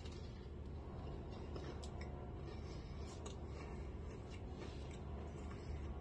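A person chewing a bite of soft donut, with faint, scattered mouth and lip clicks over a steady low hum.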